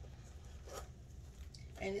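Faint handling noise of pouches and small bag contents, with a brief rasp about three-quarters of a second in; a woman starts speaking at the very end.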